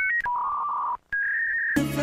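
A string of electronic beep tones like phone keypad tones: a short high two-note beep, a longer lower beep, a brief silent gap, then another higher beep. Music cuts back in near the end.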